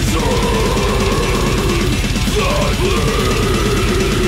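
Deathcore-style heavy metal: a harsh screamed vocal over fast, dense drumming and heavy instruments.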